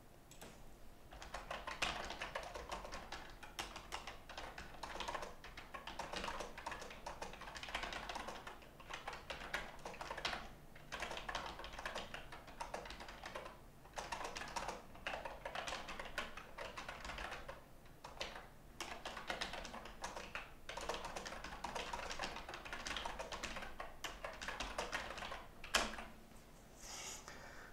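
Computer keyboard being typed on in fast runs of keystrokes, broken by short pauses, starting about a second in.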